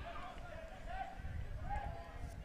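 Faint, distant shouts and calls of people around a soccer pitch, coming and going, over a low wind rumble on the microphone.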